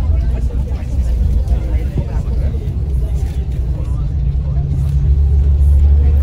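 Steady low rumble of a coach bus driving on the highway, heard from inside the passenger cabin, growing slightly louder toward the end, with faint voices over it.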